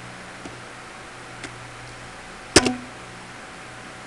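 A sharp double click, like a computer mouse button pressed and released, about two and a half seconds in, with two faint ticks before it, over a steady low hum.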